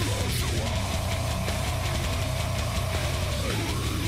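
Heavy metal music: a male metal vocalist's harsh scream holds one long note for about three seconds over dense, heavy instruments.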